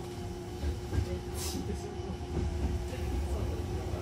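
Hankyu Kobe Line electric train running, heard inside the carriage: a steady low rumble of wheels on the track that grows louder about a second in, with a steady hum, light clicks and a brief hiss about a second and a half in.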